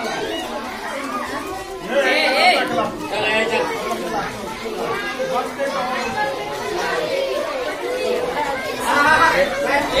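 A roomful of schoolchildren chattering and calling out over one another, with a few louder, higher voices rising above the hubbub twice.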